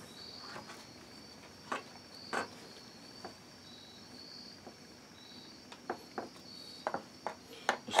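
Faint clicks and light taps of a putty knife and gloved hands working resin-soaked denim in an aluminium foil pan, a handful of times, closer together near the end. Crickets chirp steadily in the background.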